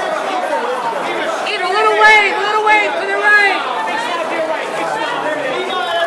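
Chatter of several people talking over one another, with no single clear voice.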